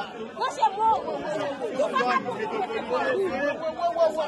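Several people talking at once: overlapping chatter of men's voices in a room.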